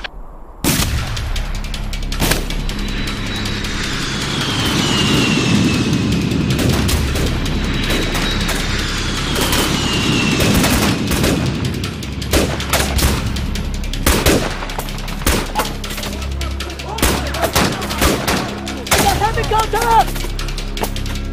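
Film battle sound: sustained gunfire with many sharp shots and machine-gun fire, growing denser in the second half, mixed with a music score. Two long falling whistles sound in the first half.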